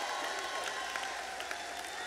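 Congregation applauding, the applause slowly dying down.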